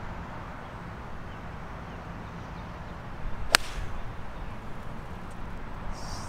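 Golf ball struck once with an 8-iron from the tee: a single sharp, crisp click about three and a half seconds in.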